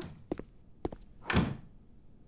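A door swinging shut with a single thunk about one and a half seconds in, after a couple of light clicks.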